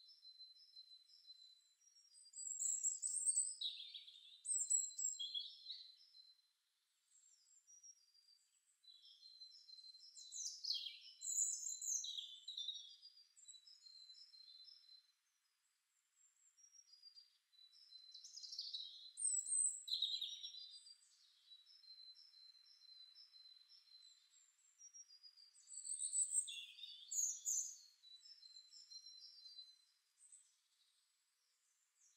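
Songbirds singing faintly: four bouts of high chirps and trills, each a few seconds long, coming about every eight seconds.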